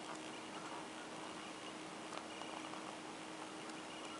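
Faint rustle of a scrapbook paper pad's sheets being turned by hand, with a few soft paper flicks, over a steady low hum.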